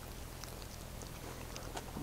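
Faint chewing of a bite of ripe plum, with a few soft, short ticks of the mouth on the juicy flesh.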